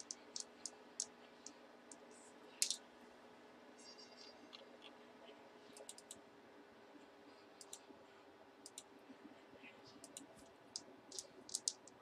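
Faint, scattered clicks of a computer mouse and keyboard at irregular intervals, over a faint steady hum.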